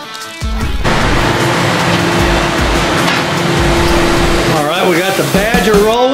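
Rock background music with a loud, even rushing noise of flames for about four seconds, then a voice near the end.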